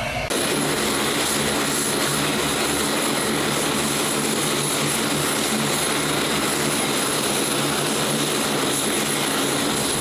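C-130J Super Hercules's Rolls-Royce AE 2100 turboprops running on the ground with propellers turning, a steady propeller drone with a thin high turbine whine above it.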